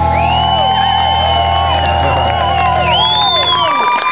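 Live rock band's final chord on electric guitars and bass held and ringing, cut off near the end. The crowd cheers and whistles over it.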